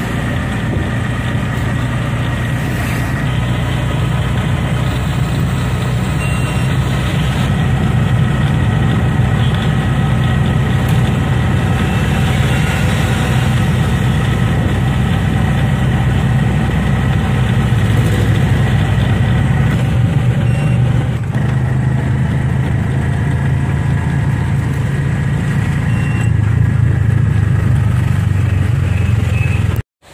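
Engine of a road vehicle running steadily while travelling along a road: a loud, unbroken low hum that cuts off suddenly at the end.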